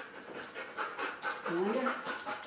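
A husky panting, quick breaths about three a second, with a brief pitched vocal sound in the second half.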